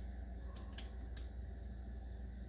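Faint, light clicks of a small bolt being threaded in by hand, over a steady low hum.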